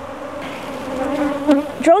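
Honeybees buzzing around an open hive in a steady hum at one pitch.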